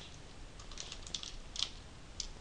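Typing on a computer keyboard: light, irregular key clicks in short runs, one a little louder about one and a half seconds in.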